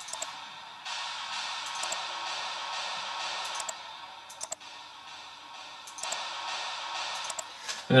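A white-noise effect from a progressive house track, soloed and playing on loop: a hiss that swells up about a second in, falls back a few seconds later and swells again near the end.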